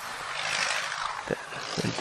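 Wind and road noise of a motorcycle moving slowly through traffic: a hiss that swells for about the first second and then eases off.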